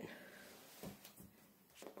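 Near silence in a small tiled room, with two faint soft bumps about a second apart, from handling the phone while climbing down.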